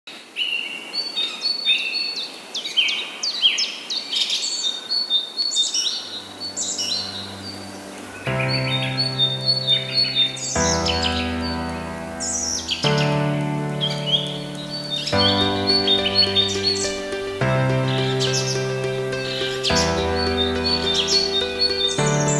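Songbirds chirping and singing in quick whistled phrases. Background music comes in about six to eight seconds in: held chords that change roughly every two seconds, under the continuing birdsong.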